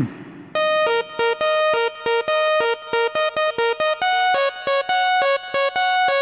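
Electronic dance-track intro: a synthesizer plays a quick riff of short, clipped notes that start about half a second in and hop between two pitches, moving to higher notes about four seconds in.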